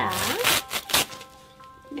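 The fluffy absorbent padding of a disposable diaper being torn apart by hand: a few quick rips in the first second, over background music.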